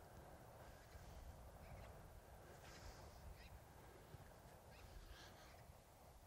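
Near silence: faint outdoor background rumble with a few brief, faint high-pitched sounds scattered through it.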